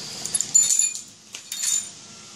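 Paper towels being rummaged through: two short bursts of crisp rustling with light clinks, about half a second in and again near the end.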